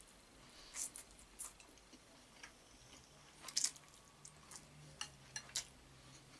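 A man chewing a mouthful of navy-style macaroni (pasta with minced meat), close to the microphone. A few short, sharp wet mouth smacks and clicks are scattered through it.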